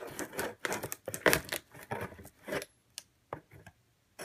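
Packing tape on a cardboard shipping box being slit open with a blade: a quick run of scratchy rips and scrapes that stops about two and a half seconds in, followed by a few light clicks and taps.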